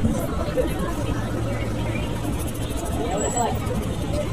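Outdoor crowd babble: many passers-by talking at once on a busy city sidewalk, with a steady low hum underneath.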